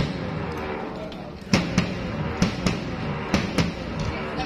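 Acoustic drum kit being struck during a sound check: a single hit at the very start, then paired hits about a quarter-second apart, roughly one pair a second, from about a second and a half in.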